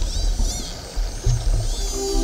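Underwater ambience: a low steady rumble with a few short, high whistles that rise and fall. A music bed of steady held notes comes in near the end.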